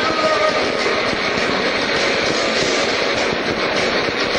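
Loud live metal band playing: electric guitars, bass and drums merged into a dense, steady wall of sound, with a few held notes near the start.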